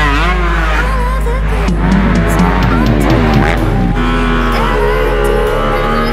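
Background hip-hop music with a steady bass beat, mixed with a dirt bike's engine revving up and down as it rides and jumps the track.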